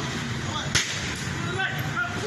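A single sharp crack of an impact about three quarters of a second in, struck during a crowd's attack on a vehicle, over the voices and shouts of the crowd in the street.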